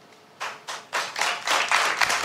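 Hands clapping: a few separate claps about half a second in that quickly build into steady applause.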